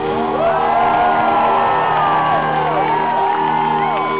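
A rock band's live music holding a steady sustained chord in a large venue, with fans screaming and whooping over it in many overlapping rising-and-falling cries.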